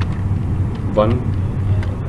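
A steady low hum runs under one short spoken word.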